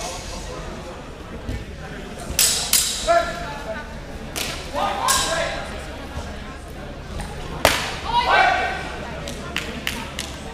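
Low, indistinct voices in a large hall, broken by several sharp clacks, the loudest about three-quarters of the way through.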